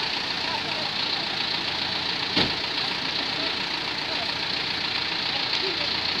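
Mitsubishi Fuso Canter dump truck's diesel engine running steadily at low speed as the truck passes close by, with a single sharp knock partway through.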